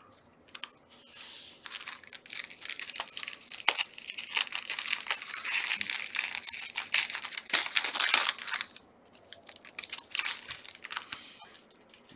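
Trading-card pack wrapper being torn open and crinkled by hand. There is a dense run of crackling and rustling from about a second and a half in to about eight and a half seconds, then scattered crinkles and clicks.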